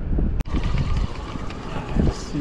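Wind buffeting the microphone, a dense low rumble, with a sudden brief dropout about half a second in.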